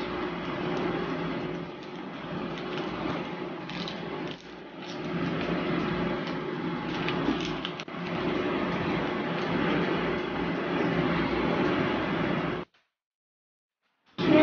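A small clear plastic candy wrapper being handled and torn open, crinkling, with a few sharper clicks, over a steady background hum. The sound cuts off suddenly about a second before the end.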